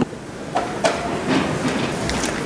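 Background noise of a large conference hall, with a few soft knocks and rustles.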